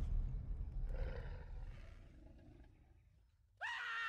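A deep animated-dinosaur roar and low rumble fading away over about three seconds to near silence. Shortly before the end, a sudden high, held scream begins.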